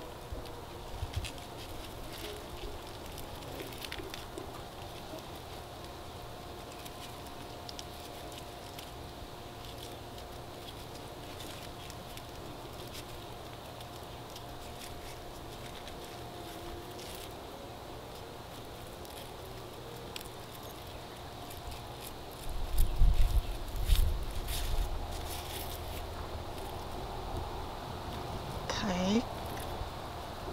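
Faint rustling and light crackling of wilted lemongrass leaves being handled and bound into a bundle, with a faint steady hum behind. A low rumble comes in for a few seconds near the end.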